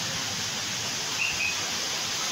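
Steady hiss of heavy rain, with a faint, short, high chirp a little past halfway through.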